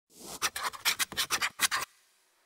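A scratching sound effect: about a dozen quick, rough strokes in a rapid run that stops abruptly just before the end.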